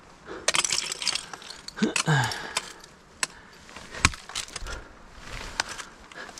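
Ice tool picks striking and chipping into water ice: a run of irregular sharp knocks with ice crunching and breaking between them, and metal gear jingling. A short laugh and sigh about two seconds in.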